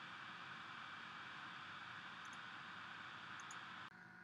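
Faint steady hiss of room tone and recording noise, with no distinct sound event. The hiss drops away abruptly just before the end.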